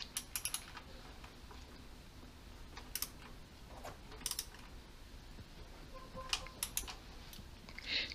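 Faint short runs of clicks from a socket ratchet as the valve cover nuts are tightened by hand, with a few light clinks of the tool on the nuts.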